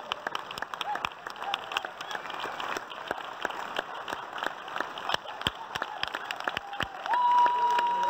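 An audience clapping steadily, dense and irregular. A loud, steady, held tone joins near the end.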